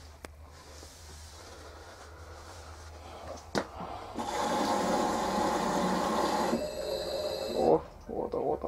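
LG F1029SDR washing machine's direct-drive inverter motor trying to turn the drum and jamming. A click a little over three seconds in, then about two and a half seconds of an unpleasant, harsh noise with a whine in it as the motor strains and barely moves the drum. The speaker takes it for a seizing motor, which brings up the LE error.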